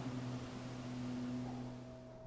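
Quiet room tone: a low steady hum with faint hiss, growing quieter near the end.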